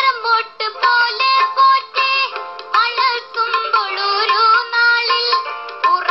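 A young male singer sings an ornamented, gliding melody into a microphone over instrumental accompaniment. It is heard through small computer speakers and picked up by a phone, so it sounds thin, with no bass.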